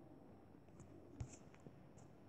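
Near silence: faint room tone, with a few small, short clicks about a second in.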